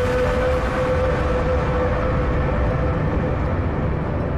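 Documentary soundtrack sound design: a loud, steady low rumble with one long held droning tone over it. The higher hiss slowly fades.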